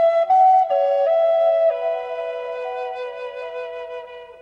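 Background music: a slow solo flute melody, a few notes stepping down in the first second and a half, then a long held low note that fades away.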